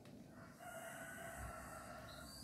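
Rooster crowing faintly: one long, drawn-out crow beginning about half a second in.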